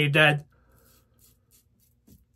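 The last syllable of a man's word, then an American Liberty CNC stainless steel safety razor scraping through lather and stubble in a quick run of short, faint strokes.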